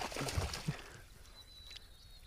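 A hooked spotted bass thrashing and splashing at the water's surface, a burst of splashes in the first second, then quieter.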